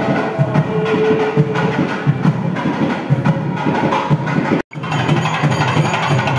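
Music driven by fast, busy percussion, with dense rapid strokes throughout. It cuts out for an instant about three-quarters through, then carries on.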